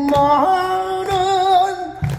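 A man singing in a traditional Korean gugak voice, holding two long notes with slight vibrato; the second note steps up in pitch about half a second in. A barrel drum (buk) gives a few sparse strokes underneath.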